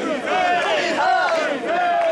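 Many men's voices shouting a chant together, overlapping and hoarse, as a crowd of bearers heaves a portable Shinto shrine (mikoshi) along on their shoulders.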